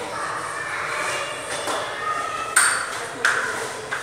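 Two sharp, ringing taps about two-thirds of a second apart.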